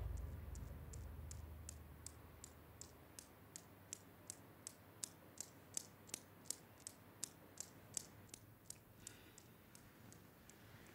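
Newton's cradle in motion: its steel balls clicking against each other in a faint, even rhythm of about three clicks a second.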